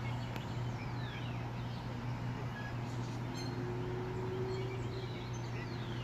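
Outdoor background with a steady low hum and a few faint bird chirps, including a falling whistle about a second in.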